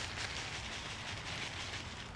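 Potting soil pouring from a plastic bag into a plastic nursery pot, a steady gritty pouring sound.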